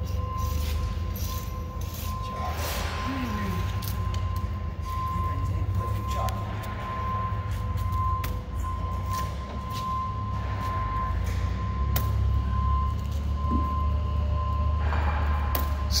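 A steady low hum with a constant high-pitched whine over it, faint voices, and a few scattered clicks.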